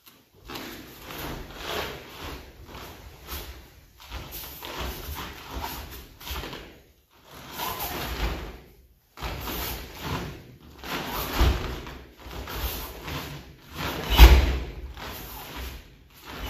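Two karateka performing kata techniques barefoot on foam mats: repeated swishes and snaps of their cotton gi uniforms and thuds of feet stepping and stamping. A few heavier thuds stand out, the loudest near the end.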